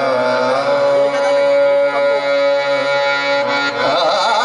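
Indian classical vocal with harmonium accompaniment: a male voice sustains a long held note over steady harmonium tones, and a new sung phrase with a wavering ornamented line begins near the end.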